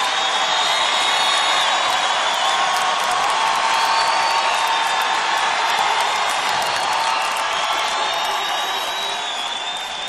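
Large arena crowd cheering, a dense steady roar of voices with high, drawn-out tones gliding over it; it eases off slightly toward the end.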